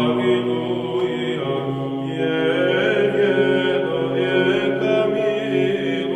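Music of chanted choral singing: voices holding long, steady notes under a slowly moving melody.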